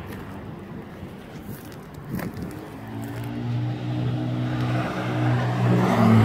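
A motor vehicle's engine running steadily nearby, faint at first and growing louder from about three seconds in, with one brief knock about two seconds in.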